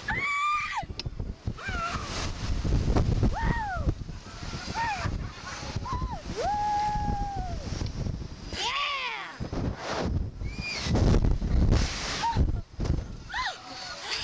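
Two kids screaming and shrieking on a Slingshot ride: a string of short cries that rise and fall in pitch, with one longer held scream about halfway through. Wind rumbles on the microphone as the ride flings them through the air.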